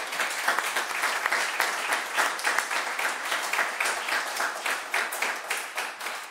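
A roomful of people applauding, many hands clapping at once.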